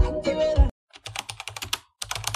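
Music cuts off about two-thirds of a second in. It is followed by rapid computer-keyboard typing clicks, several a second: a typing sound effect laid under text being typed out on screen.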